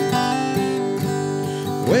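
Acoustic guitar playing alone between sung lines, notes changing every fraction of a second. A man's singing voice comes back in with a rising note at the very end.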